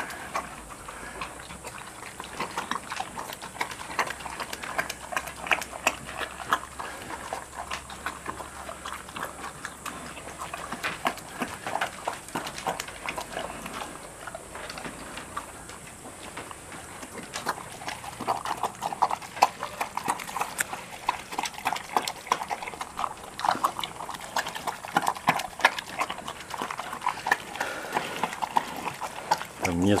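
A bear eating thick grain porridge: wet smacking and slurping with a quick, irregular run of clicks, busier and louder in the second half.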